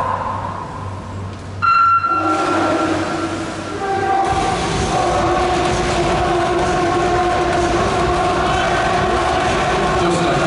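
Electronic starting signal: a short, high beep under half a second long, about two seconds in, that sets off a backstroke race. It is followed by spectators cheering with long, held shouts, which grow louder and run steadily from about four seconds in.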